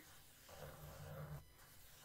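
Faint scratching of a graphite pencil on textured watercolour paper as circles are sketched, in two strokes with a short break between them.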